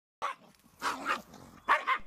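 Jack Russell terrier giving three short barks while play-wrestling with a jaguar.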